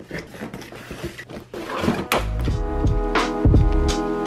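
Light rustling and small clicks as a cardboard box of felt clothes hangers is handled. About halfway through, background music with a steady beat comes in and becomes the loudest sound.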